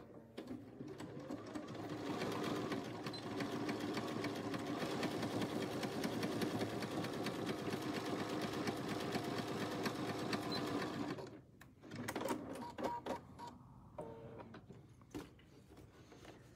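Bernina B 570 computerized sewing machine stitching steadily, zigzagging over a seam allowance to seal it off. It speeds up over the first couple of seconds, runs for about eleven seconds and stops, followed by a few short clicks.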